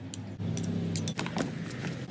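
A metal spoon scraping and clinking against a ceramic plate and a mixing basin as raw beef is scraped off onto leafy greens and the salad is tossed: a scattered run of light metallic clinks over a low steady hum.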